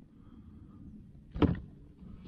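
A single short thump about one and a half seconds in, from the pike being handled onto the measuring board on the kayak; otherwise only low background noise.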